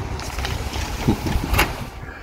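Steady low rumble of outdoor background noise, with a single short click about one and a half seconds in.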